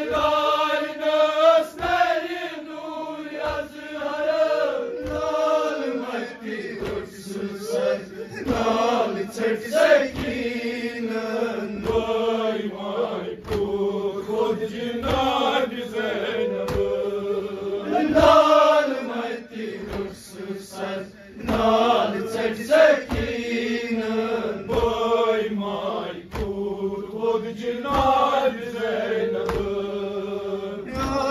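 Group of men chanting a nauha, a Shia lament, with a lead voice on a microphone and the others joining in unison. Chest-beating (matam) slaps keep time about once a second.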